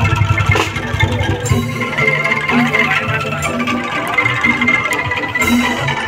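Live music from a kentongan ensemble, Javanese bamboo slit drums played with other percussion and melody, with a steady repeating beat.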